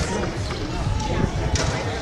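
Voices and music over dense background noise with scattered low thuds.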